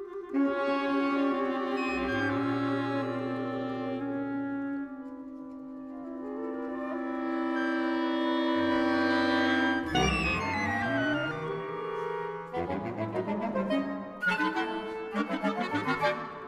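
Contemporary ensemble music: sustained instrumental tones swell to a peak about ten seconds in, then break into denser, choppier chords with sharp, short accents near the end.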